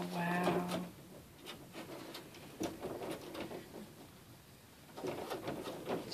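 A woman's brief, steady closed-mouth hum at the start, then soft rustling and small clicks of a doll being shifted in her arms.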